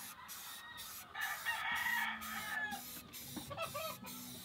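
A rooster crowing once, starting about a second in and lasting about a second and a half, heard at a distance.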